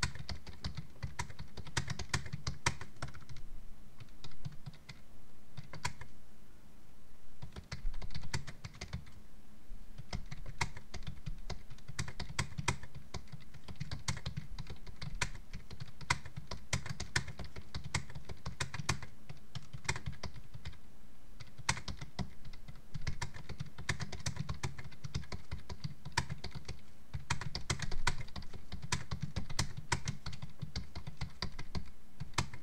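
Typing on a computer keyboard: fast runs of keystroke clicks, broken by a couple of short pauses about four and seven seconds in.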